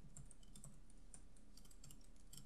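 Faint typing on a computer keyboard: a quick, uneven run of separate key clicks as a line of code is typed.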